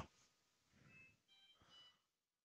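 Near silence: faint room tone, with a few faint short high tones in the second half.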